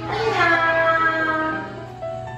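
A high-pitched child's voice in one long drawn-out call that drops in pitch at the start and fades about a second and a half in, over background music.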